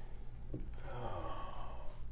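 A person's soft breath out, like a sigh, in a pause between words. It runs over a low steady room hum, with a faint click about half a second in.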